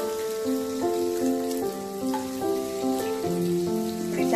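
Background music of held notes moving step by step, over the steady hiss of paneer cubes frying in oil in a kadai.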